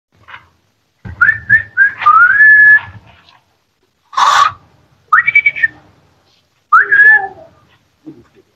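A man whistling with his hands at his mouth, in short high calls. He gives three quick whistles, then a longer rising one, a short breathy rush of air about four seconds in, and two more short whistles.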